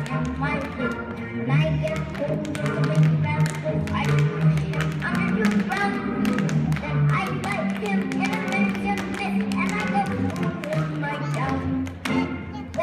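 A recorded song plays over many quick, irregular clicks of small children's tap shoes striking a wooden stage floor.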